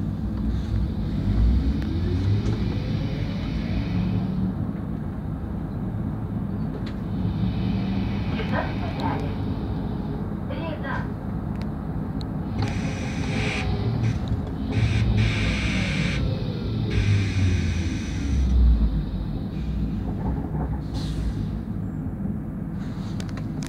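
Ride inside a Solaris Trollino 12AC trolleybus: the electric traction drive whines, rising in pitch as it pulls away in the first few seconds and falling again as it slows later on, over a steady rumble of the body and road.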